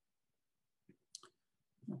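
Near silence, with two faint short clicks about a second in.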